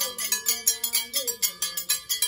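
Music led by a fast, steady metal bell pattern of about six strikes a second, with a lower melody gliding underneath.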